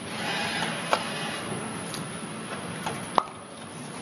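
Pot-denesting unit of a Meyer potting machine running with a steady mechanical noise and a few sharp clicks as fibre pots are separated from the stack and dropped onto the turning carousel. The loudest click comes about three seconds in.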